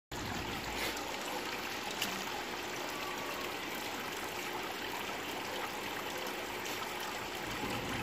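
Steady trickle of water running into an aquaponics fish tank, with a faint tick about two seconds in.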